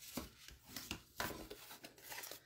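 Score lines on a cardstock flap being burnished: a tool rubbed along the folds in a few short, faint strokes.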